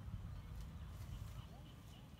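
Quiet riverside ambience: a low wind rumble on the microphone, with a faint run of short, evenly spaced high chirps, about four a second, starting about a second in.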